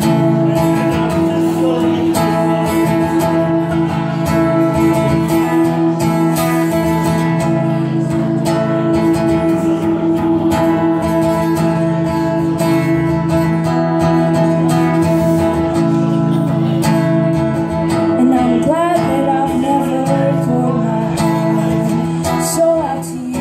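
Acoustic guitar strummed in a steady rhythm, with a woman singing over it in places, most clearly in the last few seconds.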